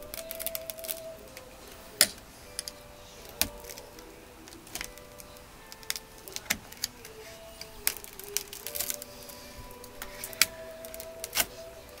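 Irregular sharp clicks and knocks of a screwdriver and fingers prying at old, rock-hard rubber weatherstripping in the metal vent-window divider channel of a 1956 Cadillac Sedan DeVille door. Faint sustained tones sound behind them.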